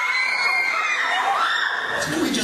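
A high-pitched voice squealing, its pitch gliding up, holding, dipping about a second in and rising again.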